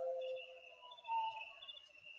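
A narrating voice trails off, then a quiet pause holding only faint, thin high steady tones with a brief faint swell about a second in.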